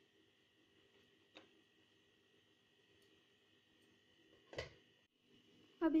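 Mostly quiet, with a faint steady high tone, a soft click about a second and a half in and one short knock a little past four and a half seconds, from a spoon and small steel bowl of burning coconut-husk charcoal as ghee is put onto it.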